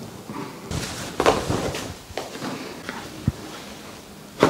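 Handling sounds on a padded chiropractic treatment table: scattered short knocks and rustles, with a single dull thump about three seconds in.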